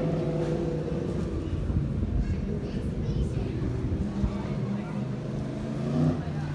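Street ambience: indistinct voices of passers-by over a steady low rumble, with a car engine running.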